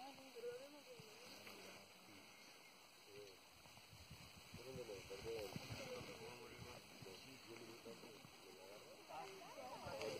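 Faint, distant voices of several people talking, too low to make out.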